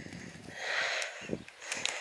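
A person sniffing, a soft hiss lasting about half a second, followed by a few faint soft knocks and ticks.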